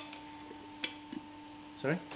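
A spatula ticking a few times against the inside of a paint tin as primer is stirred, the clearest tick a little under a second in, over a steady hum.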